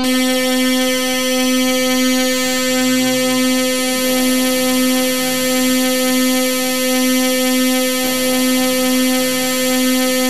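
Black MIDI played through a Casio LK-300TV soundfont: a wall of simultaneous synthesized keyboard notes across nearly every key, merging into one dense, buzzy sustained chord with a faint pulsing. A faint rising sweep runs through the high end for about four seconds, and the texture shifts around then.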